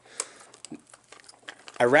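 Clear plastic cassette case being handled and opened: a few faint, scattered clicks and crinkles of hard plastic.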